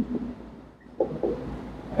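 Marker pen writing on a whiteboard: faint scratchy strokes that start about a second in, over a low room hum.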